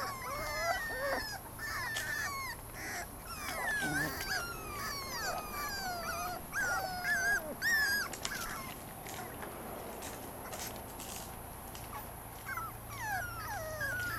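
Puppies whimpering and whining in a string of short, high cries that slide up and down in pitch, thinning out in the middle and picking up again near the end. They are stuck in a plastic kiddie pool, unable to climb out.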